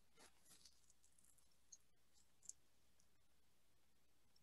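Near silence, with two faint, brief clicks partway through.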